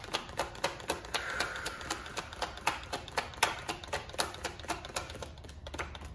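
Tarot deck being shuffled by hand: a run of quick, sharp clicks and taps of the cards, about four or five a second.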